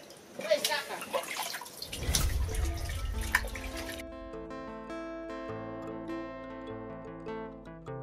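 Splashing and clinking of chicken pieces being washed by hand in a metal basin, then background music comes in about two seconds in and carries on alone.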